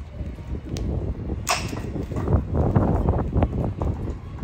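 Handling noise from hands working at the rear of a motorcycle: a click about a second in, a sharp rasp half a second later, then a run of irregular knocks and rustling.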